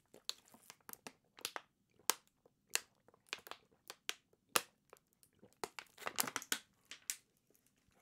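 Plastic water bottle crinkling and crackling in the hand while being drunk from, in irregular sharp crackles that bunch together about six seconds in.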